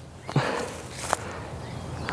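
A few soft footfalls on grass with a brief rustle as a person steps through a throw, over a steady outdoor background hiss.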